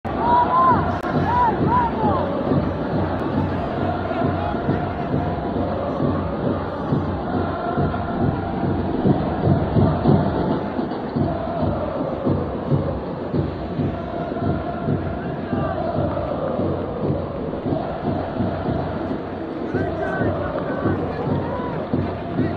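Football stadium crowd noise: a steady, continuous din of supporters cheering and calling, with a few short arching high notes in the first two seconds.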